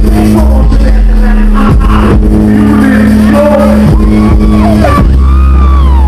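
Live band playing loud dance music: held bass-guitar notes under drums, with a vocalist's voice gliding over the top in the second half.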